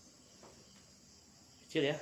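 Faint, steady, high-pitched chorus of insects chirring from the surrounding vegetation. A man's voice cuts in near the end.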